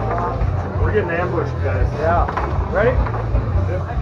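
Indistinct voices talking over a low, steady background hum.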